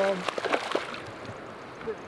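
A few quick sharp clicks in the first second, then light water sloshing, as a bass is played on a spinning rod from the boat.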